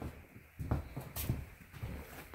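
Footsteps on a wooden floor, with a few light knocks and a sharp click as a glass door is opened to step outside.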